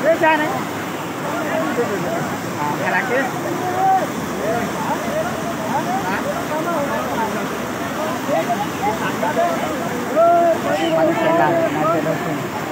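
Fast floodwater rushing across a road, a steady noisy roar, with several people's voices repeatedly calling out over it.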